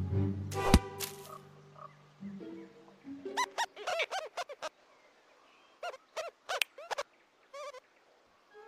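A low musical note with a sharp knock about a second in, then, from about three seconds in, cartoon rodent characters laughing in quick repeated bursts of high giggles, in several rounds with short pauses between.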